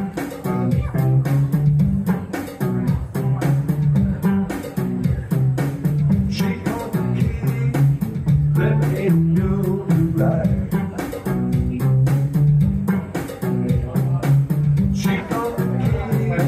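Live electric guitar played through an amplifier, strummed and picked in a steady rhythm over a repeating low bass line.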